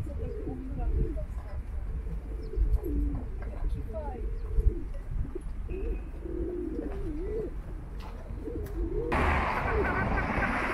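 Pigeons cooing over and over, with low wavering calls. About nine seconds in, a steady hiss sets in under the cooing.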